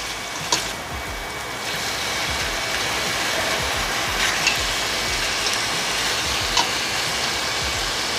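Pork spare ribs sizzling in hot oil in a stainless steel pot as they sear, getting a little louder about two seconds in. A few light clicks come from the slotted spatula knocking against the pot while the meat is stirred.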